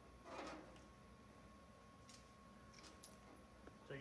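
Mostly near silence, with one brief scrape or rustle about a third of a second in and a few faint light clicks later on.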